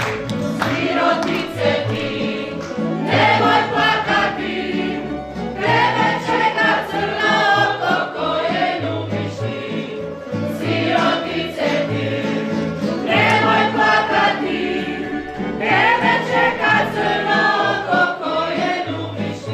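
A group of voices singing a Slavonian folk song in phrases of a few seconds each, with a tamburica band of plucked strings and a double bass (berda) accompanying them.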